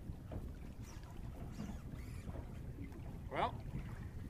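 Wind rumbling on the microphone over choppy water around a small boat, with a man's short rising exclamation about three and a half seconds in.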